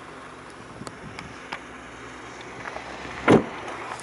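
A Honda CR-V door shut with a single solid thud about three seconds in, after a few faint clicks over a steady low background.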